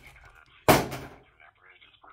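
A single sharp knock about two-thirds of a second in, as the phone is handled on the desk, with a brief ringing tail. It is followed by a faint voice.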